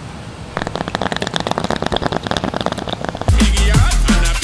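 A rapid, irregular run of sharp clicks, about a dozen a second, starting about half a second in and lasting nearly three seconds. Drum-and-bass music cuts back in near the end.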